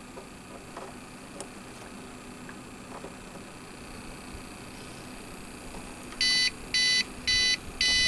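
APC RS 1500 UPS alarm beeping four times in quick succession near the end, short high-pitched beeps about half a second apart: the warning that the UPS is running on battery power. Before the beeps there is only a faint steady hum and a few small clicks.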